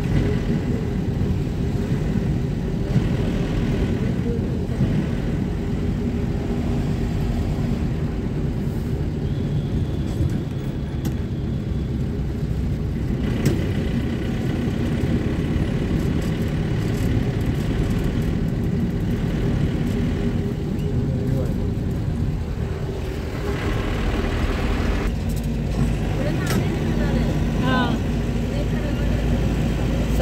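A moving road vehicle heard from inside its cabin: a steady low rumble of engine and road noise.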